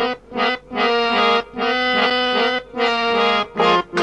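Harmonium playing the instrumental opening of a Kannada devotional bhajan song: held reedy chords in short phrases, broken by brief pauses.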